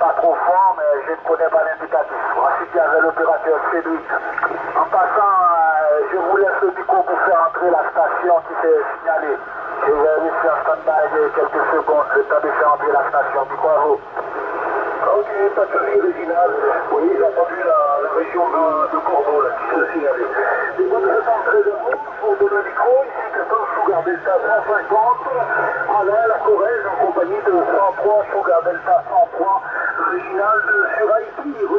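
Voices of distant CB stations coming through a Yaesu FT-450 transceiver's speaker on upper sideband, narrow and thin-sounding, over band noise. They talk almost without a break.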